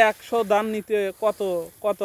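Speech only: a person talking in quick phrases.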